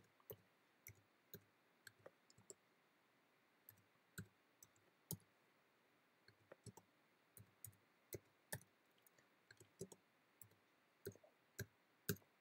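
Faint keystrokes on a computer keyboard while numbers are typed in: irregular single clicks, roughly two a second, with short gaps between bursts.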